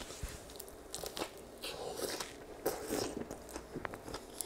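Close-miked mouth sounds of a person biting into and chewing a Subway sandwich, with scattered crunches and wet clicks.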